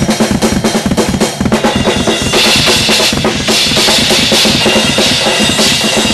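Tama drum kit with Bubinga shells played fast, with rapid bass drum strokes under snare and tom hits. From about two seconds in, a steady wash of cymbals joins.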